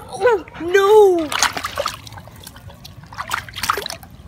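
Swimming-pool water splashing and sloshing in short bursts, about one and a half seconds in and again near the end. Before that, a voice gives two drawn-out, rising-and-falling calls.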